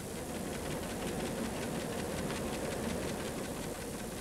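Paper tape reader of an early valve computer running: rapid, steady clicking over a hiss.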